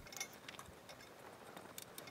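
Faint, irregular small ticks and clicks from a toothed drive belt being pulled through a CNC carriage's wheels and bearings, a few near the start and a few more near the end. The belt is sticking on the last wheel and is being eased through with extra pressure.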